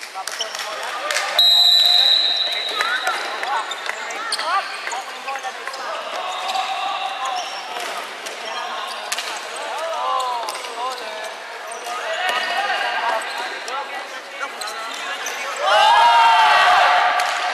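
Indoor floorball play on a wooden gym floor: sneakers squeaking, the plastic ball and sticks clicking, and players shouting, all echoing in the hall. A short, high, steady squeal about a second and a half in is the loudest sound.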